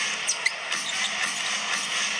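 Arena crowd noise from a basketball broadcast, a steady hubbub heard through a TV speaker, with a few brief sneaker squeaks on the hardwood court in the first half second.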